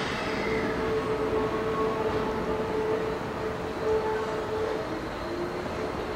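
Keikyu Deto 11/12 electric work cars running slowly over the depot tracks, with a steady hum that steps down in pitch about five seconds in.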